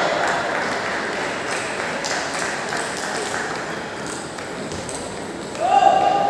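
Table tennis balls clicking off tables and bats in a large, echoing sports hall, with background voices. Near the end a loud, steady pitched sound starts and holds for over a second.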